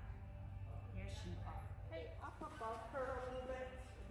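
A person's voice speaking indistinctly, louder in the second half, over a steady low hum.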